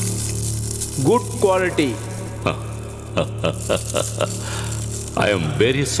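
Film soundtrack: a steady low music drone, a short wavering vocal sound about a second in, then a quick run of about six sharp clicks, with a voice coming in near the end.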